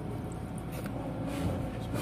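Diesel truck engine idling with a steady low rumble, with a few faint hisses about a second in.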